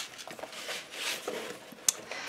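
Paper album pages being handled on a table: soft rustling, with one sharp click near the end.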